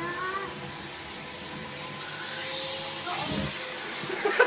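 Vacuum cleaner running steadily with a faint high whine, its hose held to a little girl's hair.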